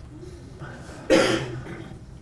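A person coughing once, sharply, about a second in, the sound dying away within half a second.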